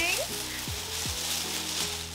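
Plastic shopping bag rustling as a plush pillow is pulled out of it, over steady background music.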